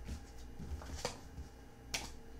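Faint handling of a deck of tarot cards: a couple of soft clicks, one about halfway through and one near the end, over a low steady room hum.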